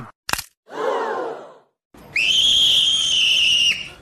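Edited-in sound effects: a sharp click, a short noisy swish, then a steady high whistle-like tone for about a second and a half that stops abruptly.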